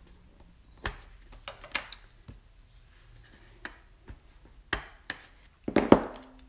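Light plastic taps and clicks of a Memento ink pad being dabbed onto a clear photopolymer stamp on an acrylic block, a dozen or so scattered knocks with a louder clatter near the end.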